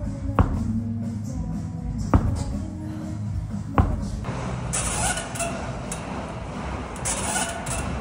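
A slam ball thrown down hard onto a turf gym floor three times, each a sharp thud about a second and a half to two seconds apart, over background music.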